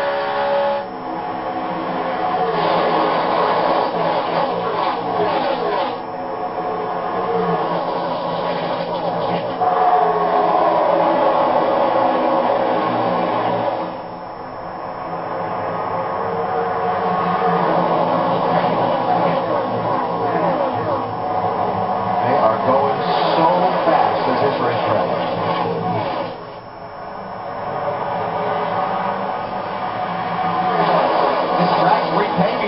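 A pack of NASCAR Cup cars' restrictor-plate V8 engines running flat out in the draft, many engine notes overlapping and rising and falling in pitch as cars pass. The sound comes from a TV broadcast played through a television speaker in a room.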